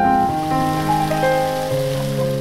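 Slow piano music with sustained notes, over a steady hiss of noise.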